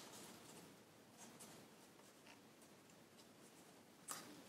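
Very faint crinkling and rustling of stiff Stark origami paper as fingers pinch and press the pleats of a paper wheel, with a few light crackles.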